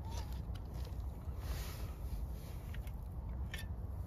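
Faint handling noise from a Jetboil Zip stove and its cup being set down: a few light clicks and a soft scrape, over a steady low rumble.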